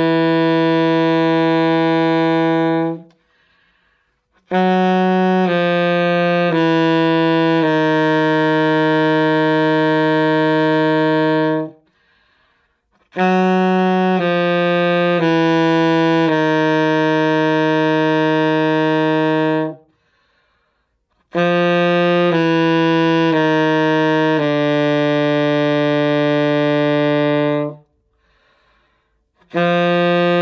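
Alto saxophone playing a low-register exercise in the bottom of its range: phrases of short tongued notes stepping downward, each ending on a long held low note. There are short silent breaks for breath between the phrases.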